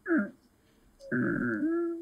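A man's wordless vocal reaction: a short falling cry at the start, then, about a second in, a long drawn-out whine.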